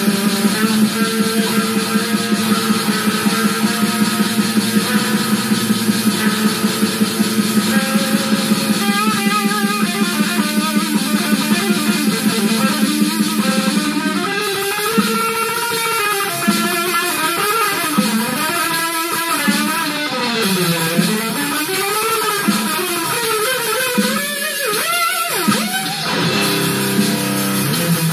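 Electric guitar with an 18-tone equal-tempered microtonal neck playing a metal riff through a small amp. The first half is fast, evenly repeated picking on a low note. From about halfway it changes to a winding line full of pitch slides and bends.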